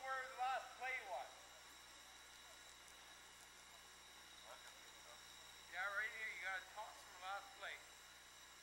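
Faint voices of people talking or calling out, twice, with a steady low hiss in between.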